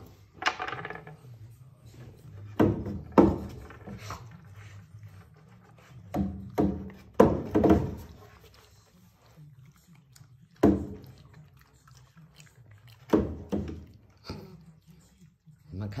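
Saarloos wolfdog puppies playing on a wooden bridge hung on chains: a series of separate thunks and knocks, about eight, spaced irregularly, as paws land and the board swings and bumps.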